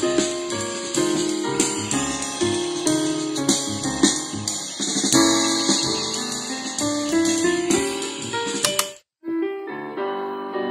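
Music with piano or keyboard, played from a TF memory card through the speaker of a Prunus J-160 retro-style portable radio. It cuts out for a moment about nine seconds in, then the music resumes.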